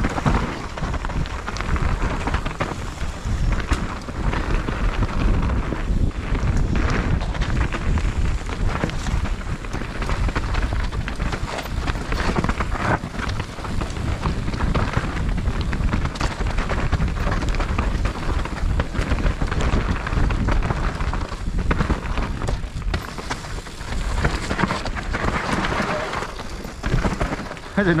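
Mountain bike descending a rocky dirt trail: tyres rolling and crunching over loose stones and roots, the bike clattering with many small knocks, over steady wind rumble on the microphone.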